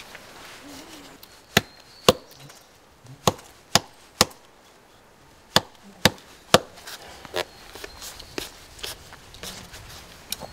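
A small hatchet chops into a red cedar trunk at the base of a cut bark strip, working the bark loose from the wood. There are about eight sharp chops over some five seconds, then a few lighter knocks near the end.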